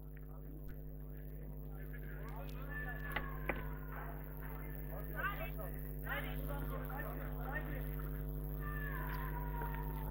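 Faint, distant voices of players calling out across the pitch over a steady electrical hum, with two light knocks about three seconds in.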